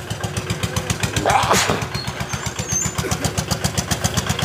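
A small engine running with a rapid, steady beat, with a brief louder sound about a second and a half in.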